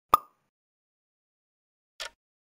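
A single short pop sound effect about a tenth of a second in, sharp at the start and dying away almost at once, followed right at the end by the start of a fainter click.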